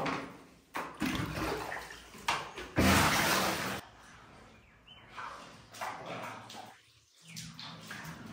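Muddy floodwater sloshing and splashing as a bucket is scooped from the flooded floor and emptied into a wheelbarrow. The loudest splash comes about three seconds in and lasts about a second, and it goes much quieter after about four seconds.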